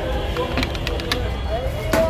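A few light clicks of utensils against a steel sherbet pot, then a sharp metallic clank near the end as the round steel lid is set down on the pot.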